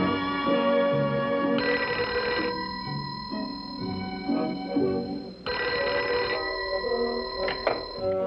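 An old-style desk telephone bell rings twice, about four seconds apart, each ring a rattling burst of about a second, over background music. Near the end a sharp click comes as the handset is lifted.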